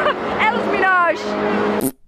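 People talking and laughing over the steady background babble of a crowded hall. The sound cuts off abruptly near the end.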